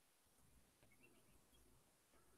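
Near silence: faint room tone, with a few very faint short chirps and ticks about halfway through.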